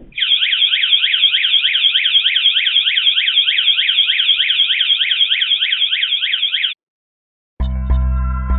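VanGuardian van alarm blasting a loud electronic warble that sweeps rapidly up and down about four times a second. It cuts off suddenly near the end, and music starts just after.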